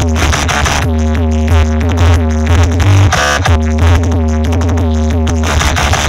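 Electronic dance music played very loud through a towering stack of DJ speaker cabinets, with a heavy, steady bass under repeating synth patterns. The pattern breaks briefly about three seconds in, then resumes.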